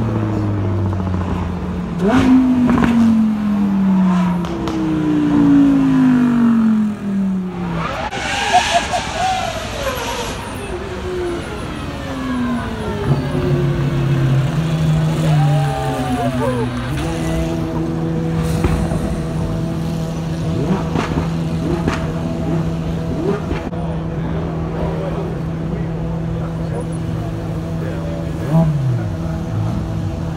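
Supercar engines accelerating up a hill-climb course, their pitch rising and dropping again and again through gear changes, with one loud pass about eight seconds in. In the second half an engine runs at a steady pitch as cars roll slowly past.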